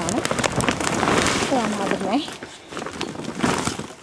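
Blue plastic tarpaulin rustling and crinkling, with gritty scraping of compost, topsoil and manure, as the sheet is lifted and folded to mix the potting mix. A short vocal sound comes in about halfway through.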